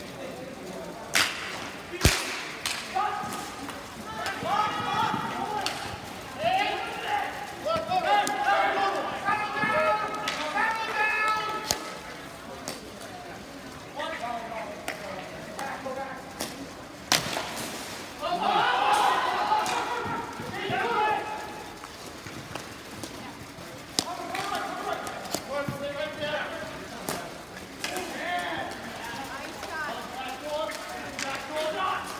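Ball hockey play: players' voices shouting and calling across the rink, broken by sharp cracks of sticks hitting the ball and each other. There are two cracks at the face-off in the first couple of seconds, then single ones about 12, 17 and 24 seconds in.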